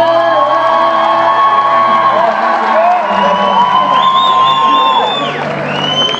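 Live music from the stage, with long held notes that bend at their ends, over a crowd cheering and whooping.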